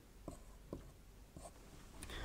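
Faint strokes and taps of a marker pen writing on a whiteboard, a few short separate marks over quiet room tone.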